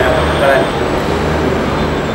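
A man speaking into a handheld microphone, over a steady low rumble in the background.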